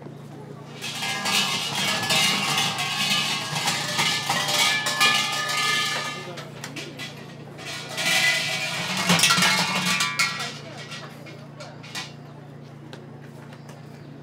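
Large metal suzu bells over a Shinto shrine's offering hall, shaken by their hanging ropes: a jangling, ringing rattle in two bouts, the first about five seconds long, the second starting about eight seconds in and lasting a couple of seconds. Worshippers ring them to call the deity before praying.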